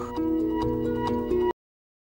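Background music of held tones with light ticks, cut off abruptly into dead silence about one and a half seconds in, where the audio has been muted for copyright.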